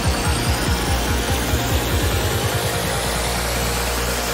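Psytrance track with a fast, pulsing kick and bassline under dense, gritty synth layers. A little past halfway the pulsing drops out, leaving a held bass note under a rising sweep, building toward a breakdown.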